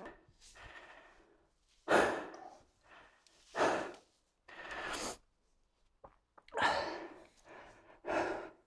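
A man breathing heavily and audibly, about six loud breaths spaced every second or two, with silence between them.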